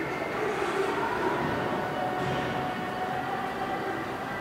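Steady indoor mall background noise: an even hum and hiss with a few faint steady tones, and no distinct event.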